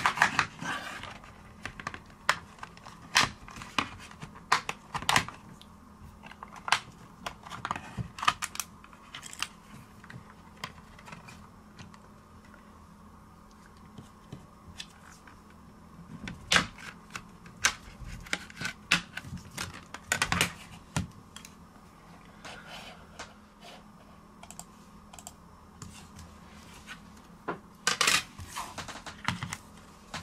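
Plastic snap-fit clips of a tablet's back cover clicking and snapping loose as it is pried open with a plastic opening pick: irregular sharp clicks, in flurries with quieter pauses between.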